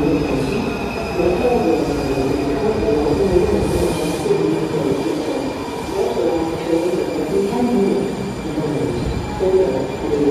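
Breda 2000-series Washington Metro train pulling into the station and slowing as it rolls along the platform. A steady high whine sits over wavering mid-pitched wheel and brake tones.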